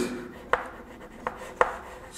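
Chalk writing on a blackboard: faint scratching of the chalk, with three sharp taps as it strikes the board.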